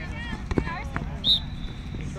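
Players and spectators shouting across the soccer field. A ball is kicked with a sharp thump about half a second in, then a short, loud referee's whistle blast sounds just after a second, stopping play.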